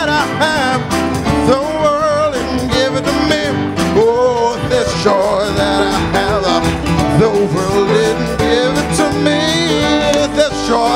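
Live gospel worship music: a congregation singing an upbeat song over instrumental backing, loud and continuous.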